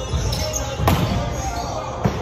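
A volleyball smacks once, sharply, about a second in: a single hard ball strike or bounce ringing through a large gym, over background chatter and music.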